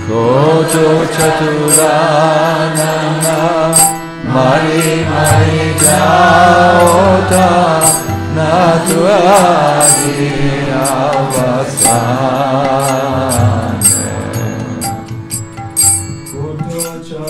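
A man singing a devotional bhajan in long, wavering, ornamented phrases, with short breaks between phrases about four seconds in and again near the end. Beneath the voice there is a steady drone, and small hand cymbals keep up a regular rhythm of metallic strikes.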